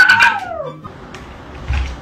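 A kitten meowing once: a single call that falls in pitch over well under a second, near the start.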